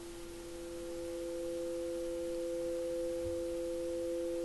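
Background music: a soft, steady drone of two held tones, one a little above the other, swelling slightly in the first second or so.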